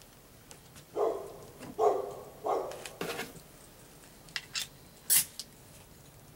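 A dog barks three times about a second in. Near the end come a click and a few short, sharp hisses, the last of them as loud as the barks.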